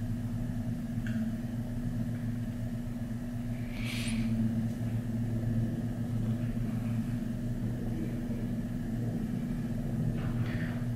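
Steady low background hum, with a brief soft hiss about four seconds in.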